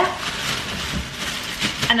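A plastic potato bag crinkling as potatoes are tipped out of it, tumbling and knocking into a wooden crate of potatoes.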